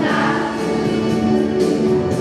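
A children's school choir singing together in held, sustained notes.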